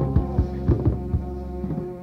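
Lo-fi punk rock recording: drum hits thud over a steady droning bass note, with no vocals, gradually getting quieter.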